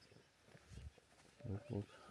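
Faint birds calling, with a man saying a single word near the end.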